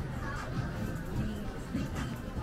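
Busy street ambience: music playing with the voices of people talking nearby mixed in.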